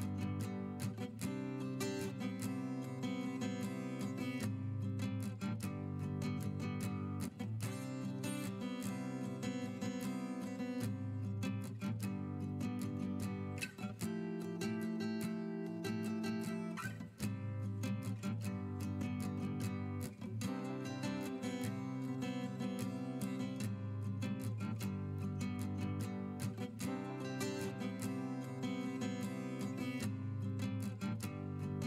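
Background music played on a strummed acoustic guitar, with chords changing every second or two.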